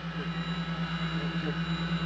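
Steady whir of fans and air handling inside the Soyuz cabin, with the space toilet's suction airflow switched on. It carries a low hum that pulses rapidly and evenly, and a thin high whine.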